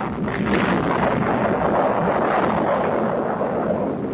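Sustained, steady rumbling roar on the soundtrack for the atomic bomb's detonation over Hiroshima.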